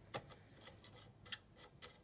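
A few faint plastic clicks and taps as a full-length pen is wiggled in the Cricut Expression's pen clamp, loose enough to move around. The clearest click comes just after the start and another about a second later.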